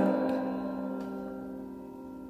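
Instrumental backing music between sung lines: a held chord dying away, with one or two soft notes struck over it.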